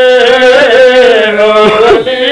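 A man singing a qasida in Punjabi devotional style, holding one long wavering note, amplified through a microphone.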